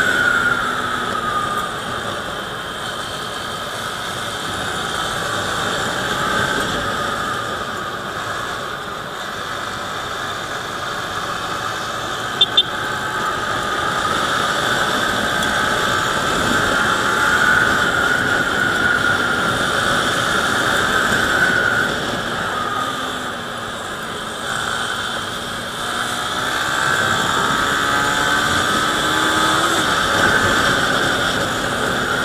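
Motorcycle engine running under way with wind noise rushing over the microphone; the engine note sags and swells, then climbs near the end as the bike speeds up. Two brief sharp clicks about twelve seconds in.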